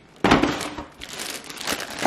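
Crinkling and crackling of a disposable aluminium foil roasting pan and a plastic marshmallow bag being handled. There is one burst about a quarter second in and a longer run of crackles in the second half.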